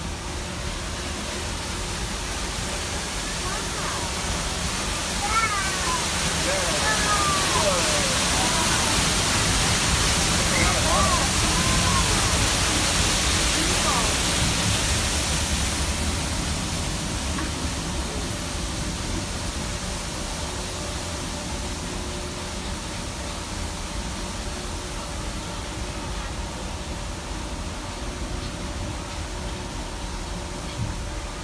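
Waterfall rushing, swelling louder as the monorail passes close beside it and fading away afterwards, over the steady low rumble of the moving monorail car.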